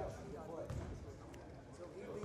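A basketball bouncing a few times on a gym's hardwood floor, with voices in the gym behind it.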